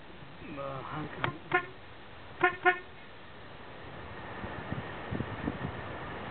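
A horn giving two pairs of short toots: a double beep about a second in and another about a second later. A faint voice is heard just before the toots.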